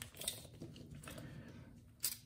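Faint handling of a tape measure as its blade is pulled out and laid along a knife on a table, with a few light clicks just after the start.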